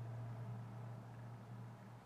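Quiet room tone: a steady low hum under faint hiss, with no distinct sound events.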